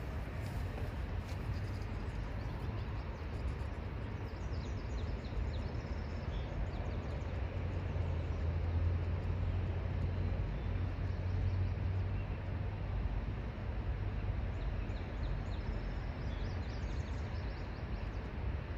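Steady outdoor background rumble and hiss, with a few short songbird chirps about four seconds in and again near the end.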